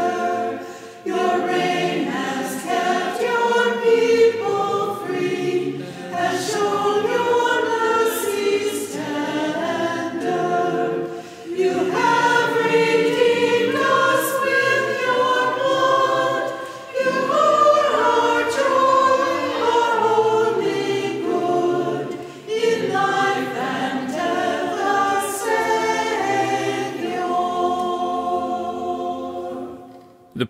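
Choir singing a hymn in long phrases with brief pauses for breath; the final phrase fades out near the end.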